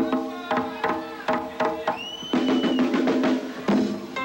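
Hand-played congas (tumbadoras) in a fast, dense rhythm of open tones and sharp strokes, within a live Latin rock band. A high note is held for under a second about halfway through.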